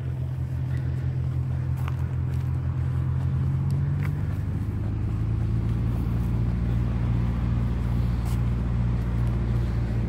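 A steady low motor hum with a few faint clicks over it; about four seconds in, its pitch steps a little lower.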